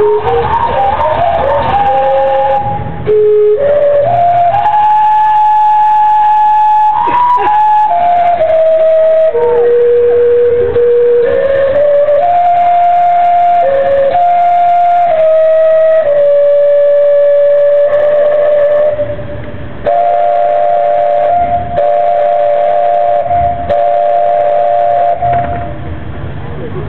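Steam clock's steam whistles playing a slow tune of held notes that step up and down. Near the end two whistles sound together in a steady chord.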